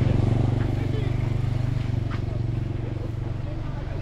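Motor vehicle engine running, a low steady hum that starts suddenly and slowly fades, with faint voices under it.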